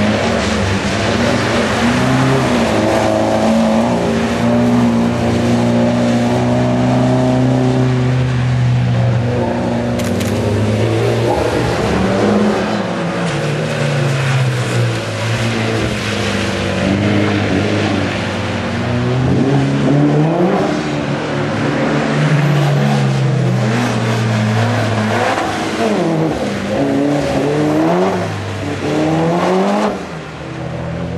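Mitsubishi Lancer Evolution's turbocharged four-cylinder engine, revved up and down over and over as the car slides on a wet skid pan, with the pitch swings coming faster in the second half. A single sharp click about ten seconds in.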